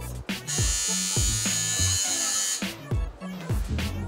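An electric razor buzzes, shaving the skin of the arm in preparation for a tattoo. It starts about half a second in and stops after about two seconds. Background music with a steady beat plays throughout.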